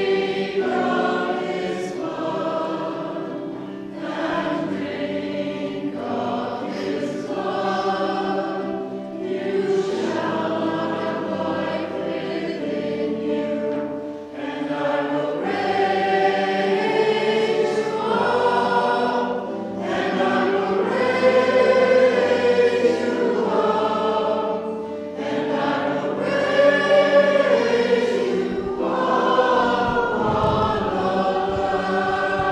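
A church choir singing a hymn in long, held phrases, with short breaks between lines.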